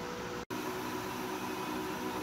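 Electric chakki flour mill running: a steady mechanical hum with a few faint tones, cut by a brief dropout about half a second in.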